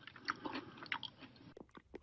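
Faint, irregular chewing and crunching of a dog eating on the floor.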